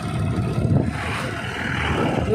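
Motorcycle running at road speed, with wind rushing over the microphone. A broad rushing swells around the middle as a large truck passes close alongside.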